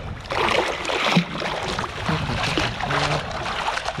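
Sea water sloshing and splashing as a perforated metal sand scoop is dug into the seabed and pulled up through shallow water, in an uneven run of splashy bursts.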